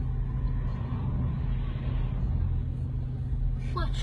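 Steady low rumble of vehicle engines running in slow road traffic.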